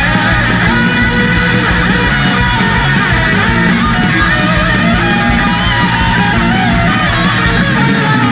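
Heavy metal band recording: distorted electric guitars and bass over drums keeping a fast, steady beat, with a guitar melody on top, loud and unbroken.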